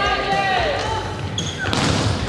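Volleyball rally: a player's long shouted call during play, then the ball being struck near the end.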